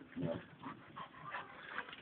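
A Staffordshire bull terrier making a few short, faint whimpers.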